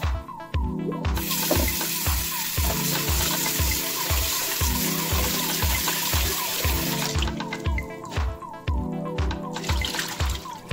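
Tap water running into a pot of rice as the grains are rinsed by hand, from about a second in until about seven seconds in. Background music with a steady beat plays throughout.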